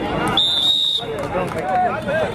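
A referee's whistle blown once, a single steady high note of about half a second, starting just under half a second in, over continuous shouting and voices from players and crowd.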